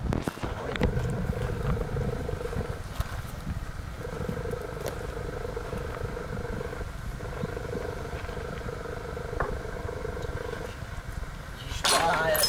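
A small motor droning at a steady pitch in three long stretches with short breaks, over a constant low rumble.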